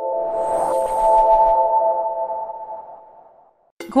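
Channel intro sting: a held electronic chord with a brief airy whoosh about half a second in, fading out over the last second.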